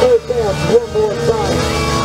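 Live rock band playing, its lead line a run of short notes that swoop up and down in pitch.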